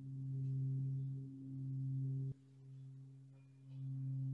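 Heavy Jambati Tibetan singing bowl rubbed around its rim with a mallet, sounding its deep fundamental, a C, as a steady hum with faint higher overtones. The hum swells and eases about once a second, drops off suddenly a little past halfway, then builds back up near the end.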